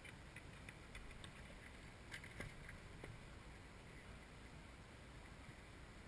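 Near silence: faint outdoor background with a steady low rumble and a few faint ticks about two to three seconds in.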